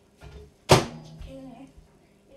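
Microwave oven door being shut with a single sharp thunk a third of the way in, followed briefly by a low steady hum.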